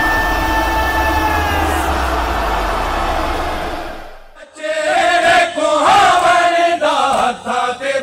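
A held, deep-rumbling intro sound with sustained tones fades out about four seconds in; then a voice begins chanting a noha, a lament recitation, continuing loudly to the end.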